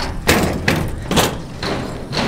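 Footsteps thudding on a boat's boarding gangway, about two a second, over a steady low rumble.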